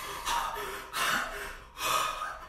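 A man gasping in exaggerated shock, three sharp, breathy gasps about a second apart.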